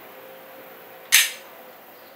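A single sharp click from a SIG Sauer P938 micro-compact 9mm pistol being worked in the hand, about a second in.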